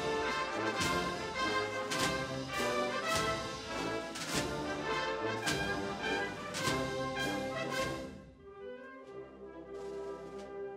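Wind band playing a Spanish Holy Week processional march, brass carrying the tune over a steady drum beat. About eight seconds in the drums fall away and the band drops quieter on held chords.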